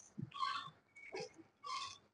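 A man's short, faint breaths under exertion, two of them about a second apart, with a small knock and a click between them, during dumbbell pullovers on a bench.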